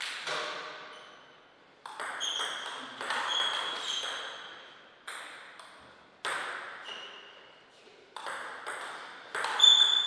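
Table tennis ball clicking off the bats and the table, single hits a second or so apart, each ringing on in the hall. Near the end the hits come quicker and louder as a rally is played.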